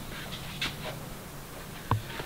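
Adhesive tape being pulled off its roll to stick up a paper sign: a few faint short tearing sounds in the first second, then a short sharp sound near the end.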